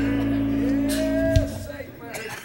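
A church choir and its accompaniment holding the final chord of a gospel song, with one voice sliding up and holding a note over it. The chord cuts off about one and a half seconds in with a low thump, leaving a fading echo.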